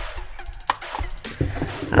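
Steel scissors snipping through the thin cardboard of a small blind box, a few short crisp cuts, over low background music.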